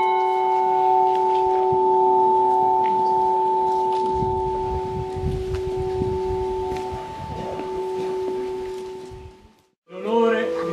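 A new church bell tuned to F sharp, cast in 2019 by the ECAT foundry of Mondovì, ringing on after a single stroke. Its steady hum slowly fades over about nine seconds, then cuts off near the end.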